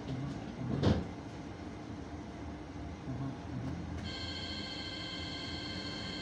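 Hannover TW 6000 tram heard from inside while running on its track: a steady low rumble, with one loud knock about a second in. About four seconds in, a steady high-pitched whine of several tones sets in suddenly.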